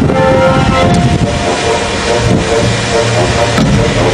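Music from a staged opera performance: a dense, loud orchestral sound with many held notes sounding together.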